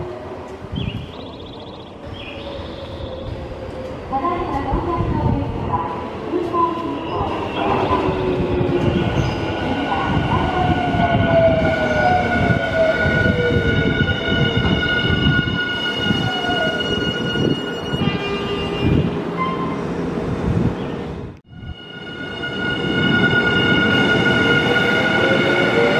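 Nankai electric commuter train pulling into a station platform: wheels rumbling on the rails while the traction motors whine down in pitch as it brakes, with a steady high squeal over it. About 21 seconds in the sound cuts out briefly, then another train is heard running in.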